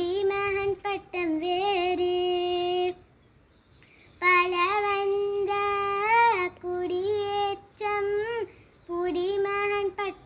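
A young girl singing a qaseeda solo and unaccompanied, in long held notes that bend and waver in pitch. She breaks off for about a second near the middle before singing on.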